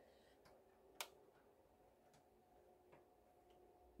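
Near silence: the faint steady hum of an electric fan, with a few light clicks, the sharpest about a second in.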